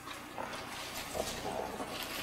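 A man quietly clearing his throat a few times.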